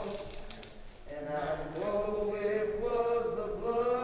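Group of voices singing a slow spiritual about the crucifixion in long, drawn-out notes, with a short break between phrases about a second in.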